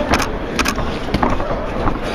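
Boxing gloves landing punches: about five sharp slaps, irregularly spaced, over steady crowd noise.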